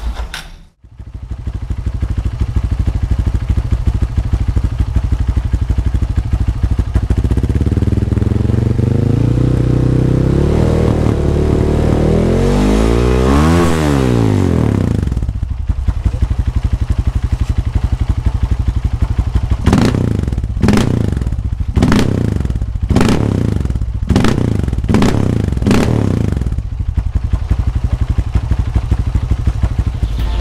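Bored-up Honda CRF150L single-cylinder four-stroke engine running through a Norifumi Rocket 4 aftermarket exhaust. It idles, then revs in one long climb to a peak about two-thirds of the way through the first half, and drops back to idle. About seven quick throttle blips follow, roughly one a second, before it settles back to idle.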